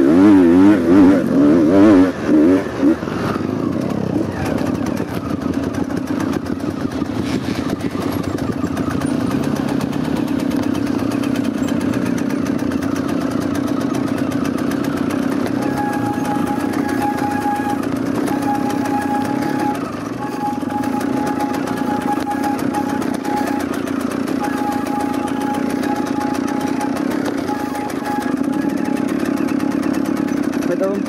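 Trail dirt bike engine heard from the rider's own bike, revved hard up and down for the first couple of seconds, then running at a steady, lower speed as it rolls down the forest trail. In the second half a thin, higher tone keeps cutting in and out over the engine.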